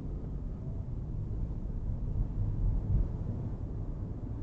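Steady low rumble of a car's road and engine noise heard from inside the cabin while driving, swelling slightly about three seconds in.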